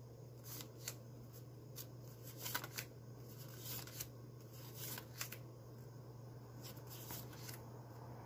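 Canadian polymer $20 banknotes being thumbed through one at a time, each note slid off the stack with a faint, crisp flick. The flicks come irregularly, about one or two a second.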